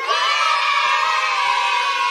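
A group of children cheering together in one long held shout, starting abruptly and sagging slightly in pitch: an added celebration sound effect.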